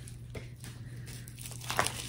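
Faint crinkling and rustling of a plastic bubble mailer and pin packaging being handled, with a few light clicks, the clearer ones near the end.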